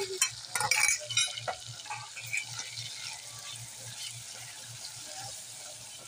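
A spoon scrapes tomato purée off a bowl into a pot of mutton, giving a few sharp scrapes and clicks in the first second and a half. Then comes a steady sizzle as the tomatoes and mutton fry in oil, stirred with a wooden spatula.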